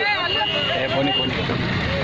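Loud voices speaking over one another, with a steady high electronic tone for about the first second and a car's engine running low underneath.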